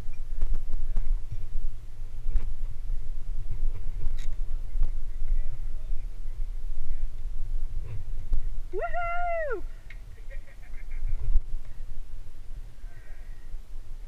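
Wind buffeting the microphone, a low, uneven rumble. About nine seconds in comes one drawn-out high call that rises and then falls in pitch, followed by a brief quick patter of ticks.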